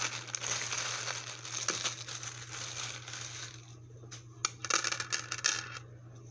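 Clear plastic bag crinkling and rustling as it is handled. The rustle is continuous for the first few seconds, then breaks into scattered sharp crackles before stopping near the end.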